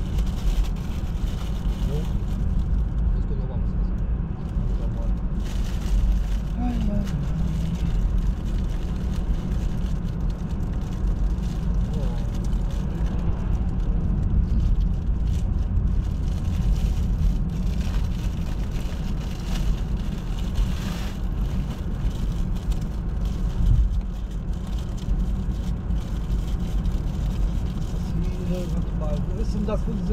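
Steady low rumble of road and tyre noise heard inside a moving car's cabin.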